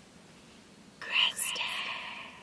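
A woman's breathy, unvoiced whisper, blown out through the mouth to imitate a soft breeze, starting suddenly about a second in and fading away.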